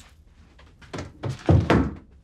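Three dull thuds, the last and loudest about a second and a half in.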